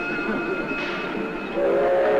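Railway train sounds laid over orchestral music, with a louder held whistle tone coming in near the end.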